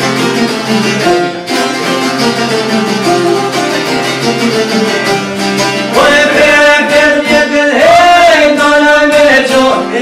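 Albanian folk music on plucked çifteli long-necked lutes: a plucked instrumental passage, then a man's voice comes in loudly about six seconds in, singing long held notes over the strings.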